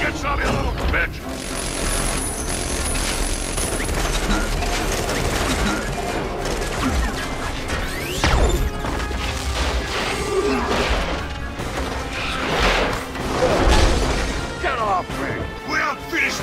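Action-movie sound effects over a musical score: mechanical clanks and whirs, crashing impacts and deep booms, with sweeping tones rising and falling. The loudest hit comes near the end.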